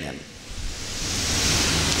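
Audience applause, starting about half a second in and swelling steadily louder.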